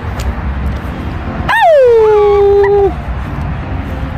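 A long drawn-out vocal call about a second and a half in: it starts high, slides down, then holds one steady pitch for about a second before breaking off. Underneath runs a steady low rumble.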